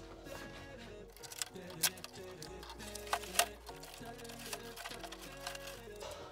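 Background music with steady sustained notes, and a few sharp knocks over it between about one and a half and three and a half seconds in.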